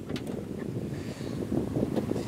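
Wind buffeting the microphone, an uneven low rumble.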